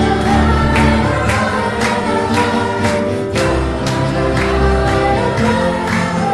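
A church worship team singing a praise song together in several voices over instrumental accompaniment, with a steady beat.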